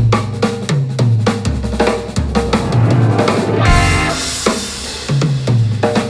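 Instrumental blues-funk band playing a groove: a drum kit with kick, snare and cymbals over electric bass, with piano and electric guitar. A cymbal wash rings out about four seconds in.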